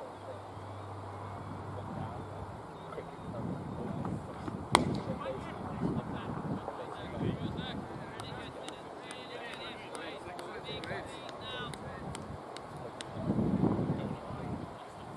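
A single sharp crack of a cricket ball being played about five seconds in, the loudest sound, followed by faint distant voices of players on the field.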